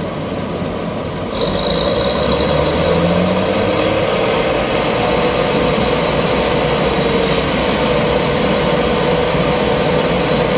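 Bizon Rekord Z058 combine harvester running: its diesel engine and threshing machinery at work as it harvests rye. About a second and a half in the sound grows louder and a steady high whine joins in.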